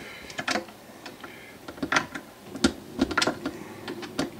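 Small metal wrench clicking and scraping against the truss rod adjustment nuts at the end of a Rickenbacker 4001 bass neck, as several sharp, irregular ticks. The rod is under a lot of tension.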